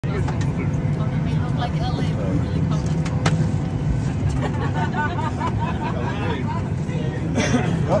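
Steady low hum of an airliner cabin with passengers' voices murmuring over it; a sharp click about three seconds in.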